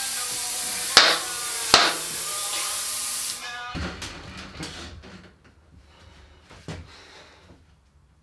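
Compressed air from a compressor hose blasting into a tubeless Panaracer GravelKing 700x32 gravel tire to seat its bead: a loud, steady hiss with two sharp pops about a second in and again under a second later, the bead snapping onto the rim. The hiss stops suddenly a little over three seconds in, leaving faint handling clicks.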